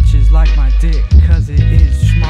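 Hip hop song: a rapped vocal over a heavy bass beat.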